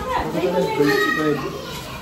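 Speech only: several voices talking, a child's among them.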